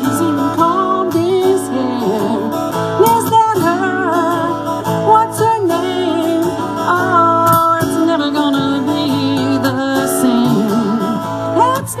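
Live acoustic band: two acoustic guitars playing under a wavering lead melody line.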